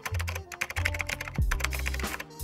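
A computer-keyboard typing sound effect, a quick irregular run of clicks, over background music with a low bass line.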